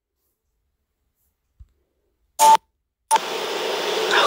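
Livestream audio dropping out: dead silence for over two seconds, a brief burst of music about two and a half seconds in, then a click and a steady hiss of microphone background noise from about three seconds in.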